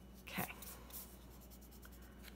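Graphite pencil scratching faintly on drawing paper as outline strokes are drawn, with one brief soft sound about half a second in.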